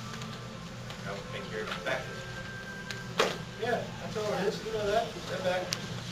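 Faint, indistinct voices over a steady low hum, with one sharp knock about three seconds in.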